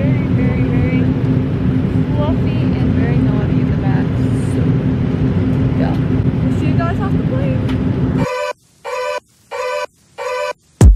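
Jet airliner cabin noise: a steady rumble of engines and air flow with a constant hum, and faint voices over it. About eight seconds in it cuts off suddenly and music starts in short, evenly spaced bursts.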